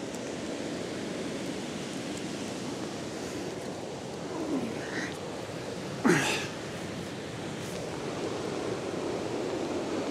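Steady rushing noise of a swollen river pouring over a weir, with heavy rain. A short falling-pitched sound stands out briefly about six seconds in.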